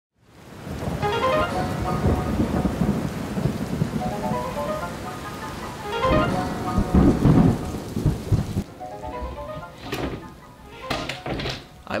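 Rain falling steadily with rolling thunder, the loudest rumble about seven seconds in, and a short rising run of musical notes repeated several times over it. The rain stops abruptly about nine seconds in.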